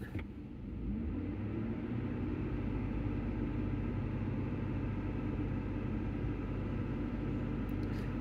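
Ford F-150 engine running at a raised idle, coming up slightly about a second in and then holding steady.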